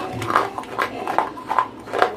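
Dry grey clay being chewed close to the microphone: a regular run of crisp crunches, about two or three a second.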